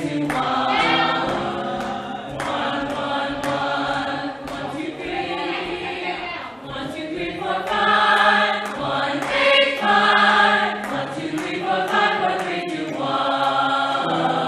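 A theatre cast singing vocal warm-up exercises together as a choir, in held notes and phrases that swell and fade. Twice the voices slide up and then back down in pitch.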